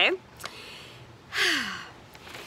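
A woman's short sighing breath about one and a half seconds in, breathy and falling in pitch, after a faint click.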